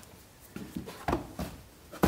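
A few light knocks and taps from the wooden box and steel frame of an old wool press being handled.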